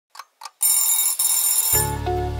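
Two quick clock ticks, then an alarm-clock bell sound effect ringing for about a second, giving way to a music jingle near the end.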